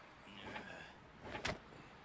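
Faint sound effects from a 3D animated action short: a brief soft noise about half a second in, then a single sharp knock about a second and a half in.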